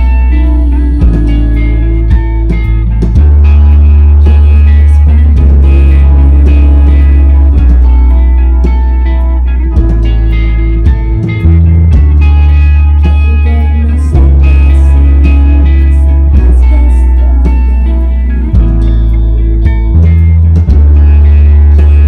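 Live band playing an instrumental passage of a rock song: guitar over deep bass notes, each held for a few seconds before changing.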